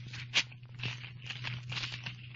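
Paper tearing and rustling as a telegram envelope is torn open and the message unfolded, done as a radio sound effect. There is a short sharp rip about half a second in, then a longer spell of crinkling, over a steady low hum from the old recording.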